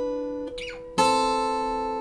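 Olson SJ cedar-top, Indian rosewood acoustic guitar: a plucked chord rings and fades, then about a second in a new chord, the same shape moved one fret down, is struck and rings out.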